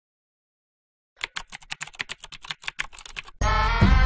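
Computer keyboard typing: a quick run of key clicks lasting about two seconds, starting after a second of silence. Music cuts in abruptly near the end.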